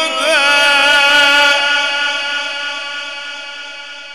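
Male Quran reciter's voice in melodic tajweed recitation, holding one long note: it wavers in quick ornaments for the first half second, then holds steady and slowly dies away over the last couple of seconds.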